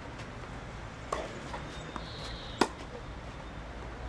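Tennis ball struck by rackets in a baseline rally: two sharp hits about a second and a half apart, the second louder, with a couple of fainter knocks between.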